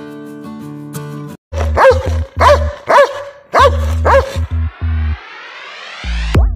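A Doberman barking, about five deep barks roughly half a second apart, starting a couple of seconds in. They are mixed over background music: plucked strings at first, then a heavy beat, with a rising whoosh near the end.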